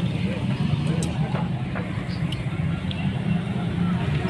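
Steady low rumble of nearby road traffic, with faint voices and a few light clicks.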